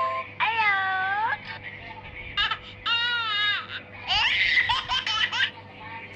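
A young child's voice squealing and giggling: one long squeal that dips and rises near the start, another around the middle, then a run of quick giggles.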